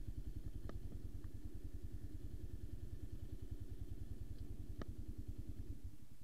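Dirt bike engine idling steadily, its even firing pulses running on, with two short clicks, one about a second in and another near the end.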